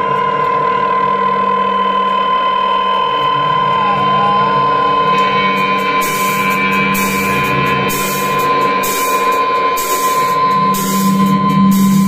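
Live rock band building up: an electric guitar drone through effects pedals holds steady tones, with a wavering pitch glide about four seconds in. About halfway through, cymbal hits join at a steady pulse, and a low bass note comes in near the end.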